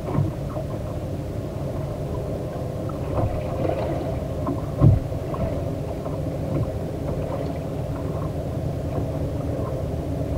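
Steady low rumble aboard a small motorboat on open water, with small knocks and one louder thump about five seconds in.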